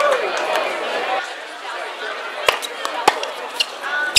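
Tennis ball hits as a point gets under way: two sharp pops about two and a half and three seconds in, then a fainter one, over a background of voices from players and spectators.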